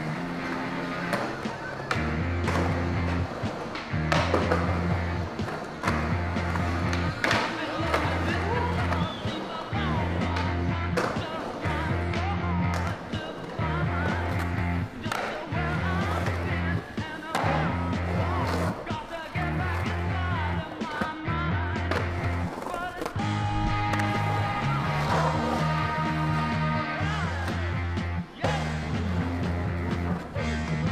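Music with a steady bass beat and singing, starting about two seconds in, over skateboard sounds: urethane wheels rolling and carving on a concrete bowl, and the sharp clacks of the board landing.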